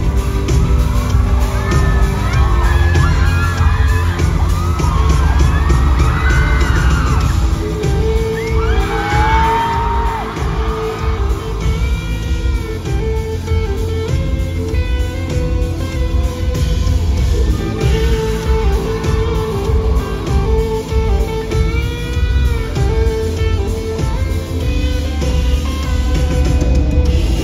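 Live band playing a pop-rock song: guitar over a strong, steady bass-and-drum low end.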